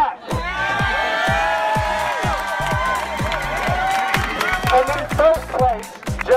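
Music with a steady thumping beat and a sustained, sliding melody, over a crowd cheering and clapping.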